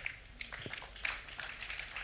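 Faint, scattered murmuring and rustling from an audience in a large hall, with no clear speech.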